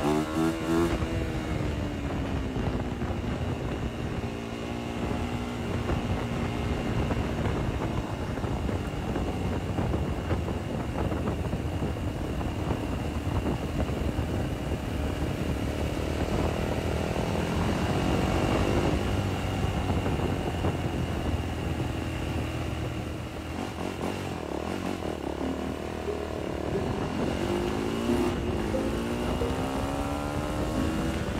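Motorcycle engine running while being ridden, its pitch rising and falling with the throttle, with a long climb about two-thirds of the way through and another near the end.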